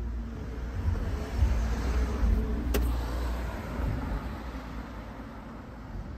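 A car passing on the street: its road noise swells, is loudest around two to three seconds in, then fades away. A single sharp click sounds a little before the three-second mark.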